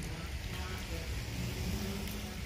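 Outdoor ambience in the rain: a steady low rumble with an even hiss, and faint distant voices.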